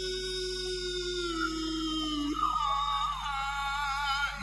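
A qari's voice in melodic Quran recitation through a handheld microphone. He holds one long note that slowly sinks, then moves up about halfway through into a higher, wavering, ornamented line.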